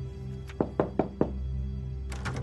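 Four quick knocks on an office door, about a second in, over background music with steady low tones.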